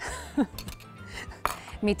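Metal spoon scraping and knocking against a container of thick cream and a glass mixing bowl as the cream is scooped out. There are a few sharp clicks, the clearest about one and a half seconds in.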